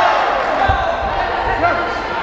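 Voices calling out across a reverberant sports hall, with dull thuds from two Muay Thai fighters in a clinch, one a little over half a second in and another about a second and a half in.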